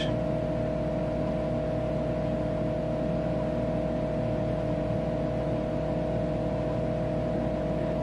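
Tektronix 4054A computer running: a steady machine hum of fan and electronics, with a constant mid-pitched whine over it.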